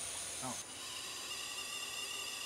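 High-pressure hydrogen flowing from a fuel dispenser through the tubing into a fuel cell car's 5,000 psi tank: a steady, high-pitched hiss with whistling tones. The whistle grows fuller about half a second in.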